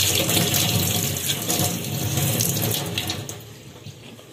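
Kitchen tap running, the stream splashing over a hand and into a stainless steel sink; the sound dies away near the end as the water stops.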